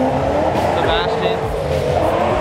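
Car engine revving high and held near the top of its revs, with voices over it.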